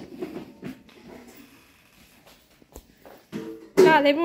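Pomeranian dog whining and crying, distressed at a person leaving. It is quiet through the middle, then a steady whine starts near the end and breaks into a loud, wavering howl-like cry.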